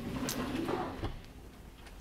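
Wooden interior door between the motorhome's living area and bedroom being opened: a soft rustle for about a second with two light knocks, then quieter.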